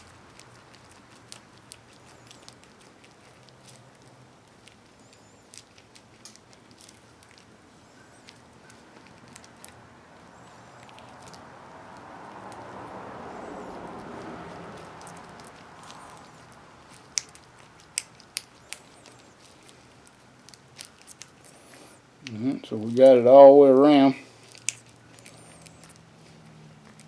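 Sticky wheel bearing grease squelching and clicking as gloved hands press it through a tapered roller bearing to pack it: quiet, with many small sharp clicks. About 22 seconds in, a voice briefly sounds for a second or two.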